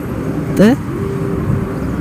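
City street traffic running under a street interview, with a short rising vocal sound from a man about half a second in.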